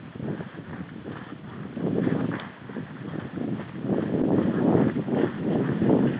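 A horse moving through palmetto scrub: hoofbeats mixed with fronds brushing and crackling against the horse, irregular and growing louder in the second half.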